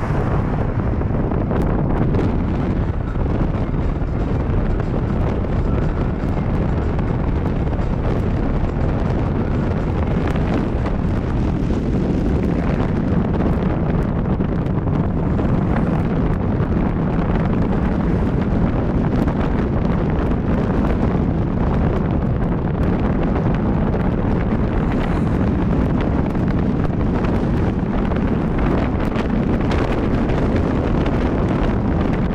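Steady low rumble of a Peugeot car on the move, engine and tyre noise mixed with wind buffeting the microphone.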